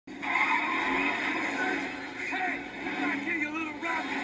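Car-chase scene soundtrack played from a TV: a car's engine and tyres skidding, with voices over it.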